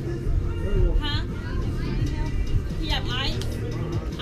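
Voices calling out, with music playing in the background.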